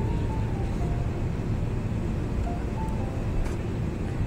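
Road noise inside a moving car, a steady low rumble, with soft music playing a few faint held notes over it.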